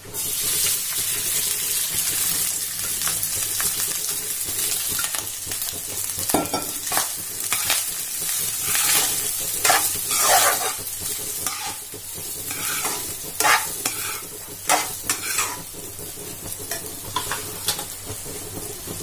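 Cooked rice frying in ghee tempered with cumin, mustard seeds and turmeric, sizzling loudly as soon as it goes in. From about six seconds in, a spatula stirs and scrapes against the nonstick kadhai in uneven strokes.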